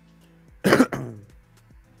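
A man clearing his throat once: a short, harsh burst about half a second in.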